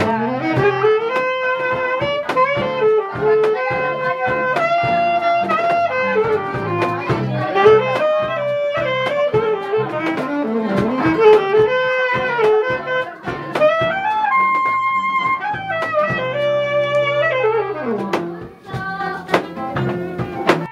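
Saxophone playing a melody over strummed and plucked acoustic guitars, a small live acoustic band; the melody holds one long note about fourteen seconds in.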